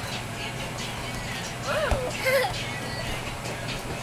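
Steady low hum of a bounce house's electric air blower, with a small child's high-pitched squeals about two seconds in.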